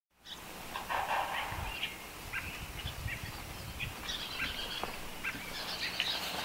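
Outdoor ambience with birds chirping: short high calls scattered throughout over a steady background noise, and a brief louder sound about a second in.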